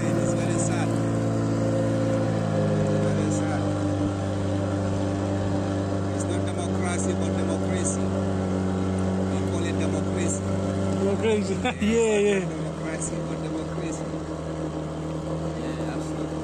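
A wooden river boat's motor running steadily under way, its note shifting a couple of seconds in and the engine easing off about twelve seconds in.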